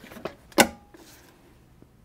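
Hotronix Auto Clam heat press clamping shut on a garment for a preheat: a single sharp clack of the upper platen locking down about half a second in, after a lighter tick.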